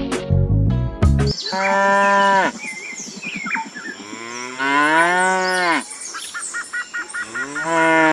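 Cow mooing: two long moos, the second longer, rising and then falling in pitch, with a third starting near the end.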